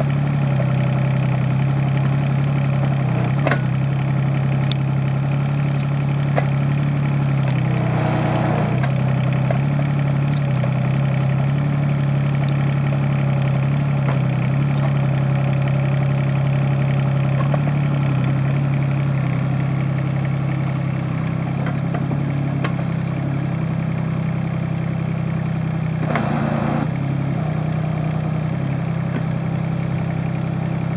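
Kubota KX36-3 mini excavator's diesel engine running steadily while the boom and bucket are worked. A few sharp clicks and two short rushes of noise, one about eight seconds in and one near the end, sound over the steady hum.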